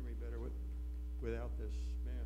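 Steady low electrical mains hum, with a faint steady higher tone over it. Two brief, faint bits of voice come through, about a quarter of a second in and again past the middle.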